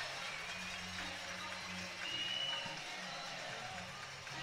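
Faint music with a few sustained low notes that change pitch, over quiet background noise.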